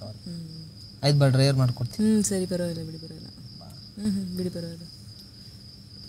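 A person's voice in four drawn-out, wavering utterances with no clear words, over a steady high-pitched chirr like crickets.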